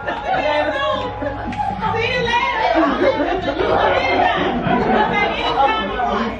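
Several people talking at once: overlapping, indistinct chatter.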